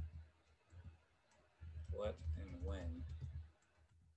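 Computer keyboard typing: a scattered run of light key clicks. Partway through, a man murmurs a few untranscribed words to himself.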